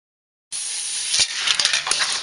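Small magnet balls clattering and clicking against each other and the glass plate after a spinning magnet-ball top has flown apart. It starts suddenly about half a second in, a rush of noise with a quick run of sharp clicks near the end.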